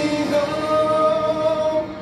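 A man singing a worship song into a microphone, the line ending on one long held note that cuts off just before the end.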